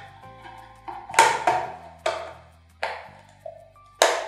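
Several sharp clicks of a thin plastic disc knocking against a clear plastic jar as it drops to the bottom, over soft background music with a steady low bass.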